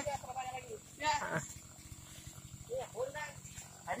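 Short snatches of people talking in the field, with a faint low hum underneath.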